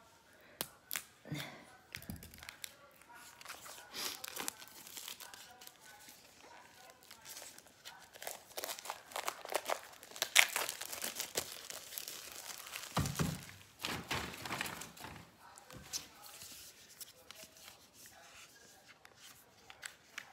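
Plastic shrink wrap on a small boxed card deck being picked at, torn and peeled off, crinkling and tearing in fits and starts. The sound is busiest and loudest about halfway through.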